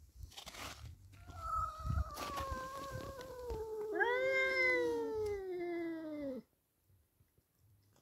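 Tomcat yowling at another tomcat in a standoff: a long, drawn-out wail that slowly falls in pitch, swoops up again about four seconds in, then sinks and cuts off suddenly a little past six seconds.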